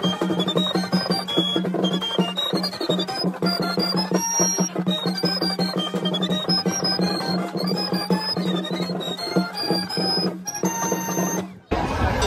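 Band music with a high, winding piccolo melody over a steady low held note, cutting off abruptly near the end.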